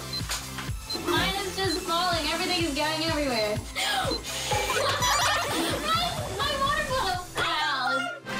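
Background music with a steady beat, and voices over it.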